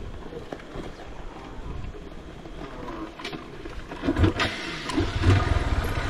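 Faint outdoor quiet with a few light clicks, then from about four seconds in a motorcycle engine runs at idle with a low, even beat.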